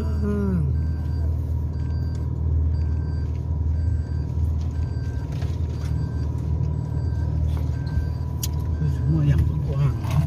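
Car cabin rumble as the car drives slowly over a rough dirt track. A faint beep repeats steadily a little more than once a second.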